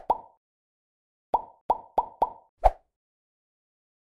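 Plop sound effects for an animated logo: one pop at the very start, then five more in a quick run from about a second and a half in. Each is a short click with a brief ringing note.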